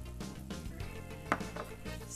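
Soft background music over halloumi sizzling in a cast-iron grill pan, with a single clink of a spoon against a small steel mixing bowl a little over a second in.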